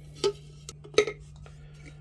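An egg set down by hand into an empty clear jug, knocking against the bottom and side twice, about three-quarters of a second apart.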